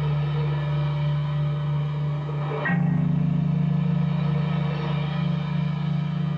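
A metal band playing live: slow, held electric guitar chords droning at a steady loud level, changing to a new, slightly higher chord a little under halfway through.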